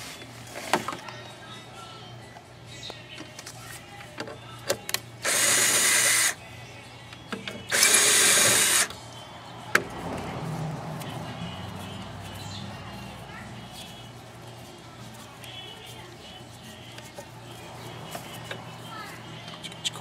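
Two bursts of a power drill, each about a second long, about five and seven and a half seconds in, amid scattered clicks and knocks.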